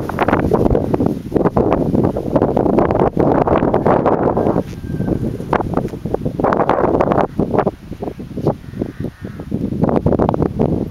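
Gusty wind buffeting the microphone, with rustling, easing off briefly a few times in the second half.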